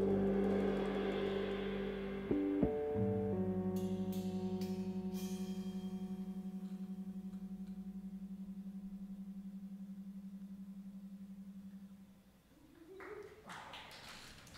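The last chord of a jazz trio's tune, carried by the electric guitar, left to ring out. It shifts once early on, then sustains with an even, fast pulsing tremolo and slowly fades away about twelve seconds in, with a few light taps along the way.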